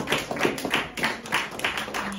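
Audience clapping that has thinned to a few hands, with separate claps coming about four or five a second.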